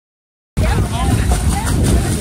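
A low, buffeting rumble of wind on the microphone with children's voices and splashing pool water, starting abruptly about half a second in.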